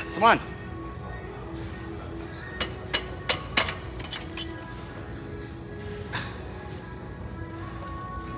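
Background music playing throughout. Just after the start comes a short strained vocal cry at the end of a leg-extension rep, and around three seconds in a few sharp metal clanks from the machine's weight stack.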